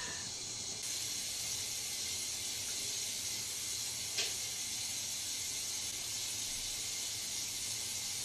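Steady background hiss with no speech, and one faint click about four seconds in.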